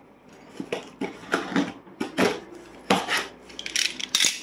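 Box cutter slicing the packing tape on a cardboard box: a series of short, irregular scrapes and clicks of blade, tape and cardboard.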